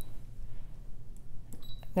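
Low room background with a few faint clicks in the second half, as the Brother ScanNCut's touchscreen is tapped to confirm its on-screen message.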